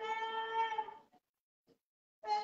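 A person's voice holding one long, steady high note that breaks off about a second in.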